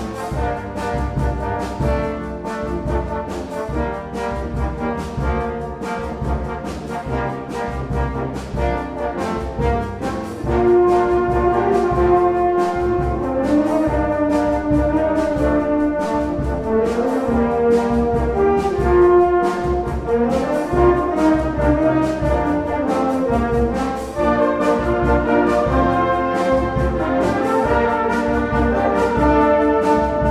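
Symphonic wind band playing live, brass to the fore over woodwinds and a steady beat, growing louder about ten seconds in.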